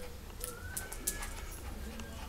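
Small long-haired dog whining: a few short, thin, high whimpers, some rising in pitch, as it begs on its hind legs.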